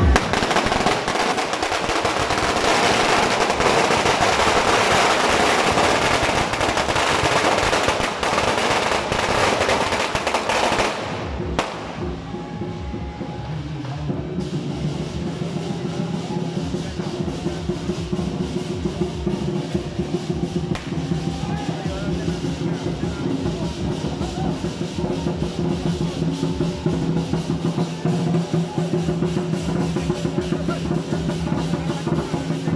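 A string of firecrackers crackling densely and continuously, cutting off suddenly about eleven seconds in. After that comes the rhythmic drumming and percussion of a lion-dance troupe, with a few held tones underneath.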